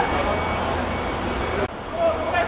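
Steady outdoor background noise on a football pitch: a low rumble with faint, indistinct voices of players. The sound drops out briefly near the end where the footage is cut.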